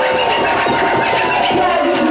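Hip-hop DJ scratching a vinyl record on a turntable: a sampled sound pushed back and forth under the hand, giving quick rising and falling pitch sweeps in fast succession.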